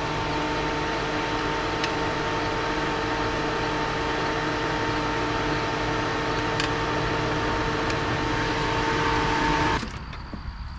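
Steady machine hum with fan-like noise running on evenly, cutting off suddenly near the end.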